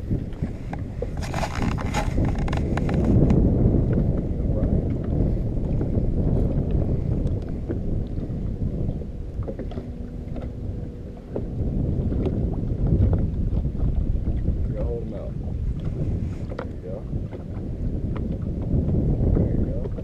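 Wind buffeting the camera's microphone in a low, uneven rumble that rises and falls in gusts. A cluster of sharp clicks and rattles comes a second or two in.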